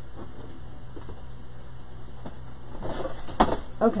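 Rolls of ribbon being pulled out and handled: faint rustling and light clicks, then a few sharp knocks near the end as they are set down.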